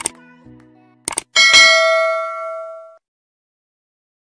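Subscribe-button animation sound effect: a mouse double-click about a second in, then a notification-bell ding that rings out and cuts off suddenly about three seconds in. The tail of a few sustained music notes fades out in the first second.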